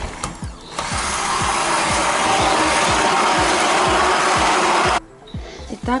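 Hand-held immersion blender running in a pot of yogurt, whipping egg yolks into it. It starts about a second in, runs steadily for about four seconds, then cuts off.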